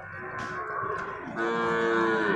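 Young water buffalo calling with long, steady moos: a fainter call in the first second, then a louder one starting about one and a half seconds in.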